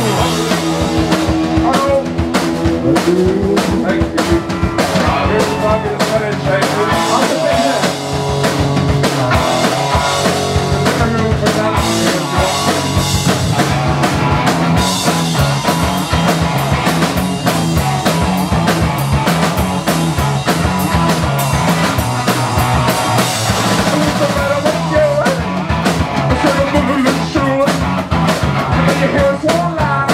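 Garage punk band playing live at full volume: drum kit, electric guitar riffing over a repeating low line, with a vocalist singing into a microphone in the first few seconds and again near the end.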